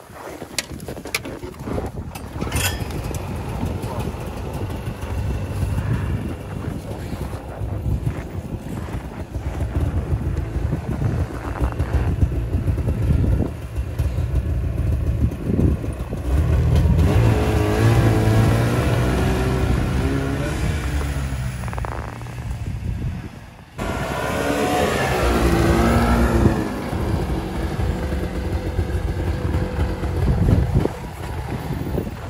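Snowmobile engine running and being revved, its pitch rising and falling several times, with a few sharp clicks near the start.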